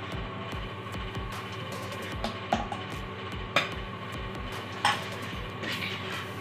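Background music with a steady beat, over which a stainless-steel slotted serving spoon clinks several times against the dishes while rice is served onto a ceramic plate.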